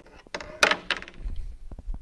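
Handling noise as a display board fitted with PEX clips is picked up: a few sharp knocks and a clatter, the loudest just over half a second in.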